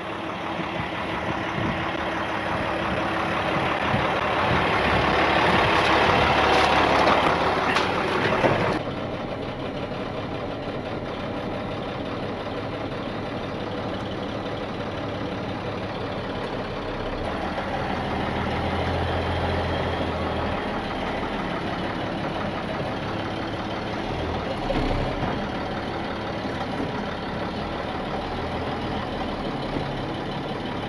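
Heavy tow truck's engine idling steadily. For the first eight seconds or so a louder rushing noise rises over it and then stops abruptly.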